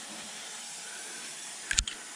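A steady low hiss with no engine running, and a single short knock near the end.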